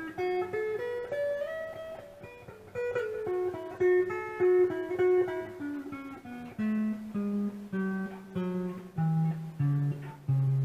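Single-note lead licks on a Telecaster-style electric guitar's neck pickup, played through an Ammoon PockRock headphone amp set to slapback delay. A climbing run opens, and the line drops to lower notes near the end.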